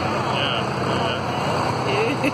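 Hayride wagon rolling along with a steady engine drone from the vehicle pulling it, the ride rumbling and rattling underneath, and riders' voices faint in the background.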